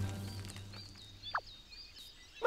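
Faint cartoon forest ambience: birds chirping in short high notes, with one quick falling whistle about halfway through. The end of the music fades out at the start.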